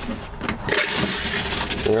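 RV toilet flushed with its hand lever: a click about half a second in as the bowl valve opens, then a steady rush of water into the bowl.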